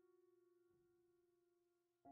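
Near silence, with only the faint fading tail of a held background-music note.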